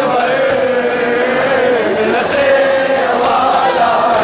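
A crowd chanting together in unison: a continuous, loud, slowly wavering chant of many voices.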